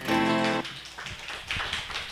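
The last guitar chord of a song's backing track, held about half a second and then dropping away, followed by a few faint scattered claps.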